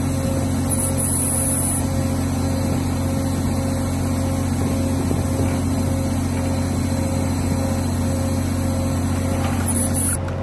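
Steady low hum of a ship's machinery running on deck, made up of several constant low tones that do not change in pitch or level.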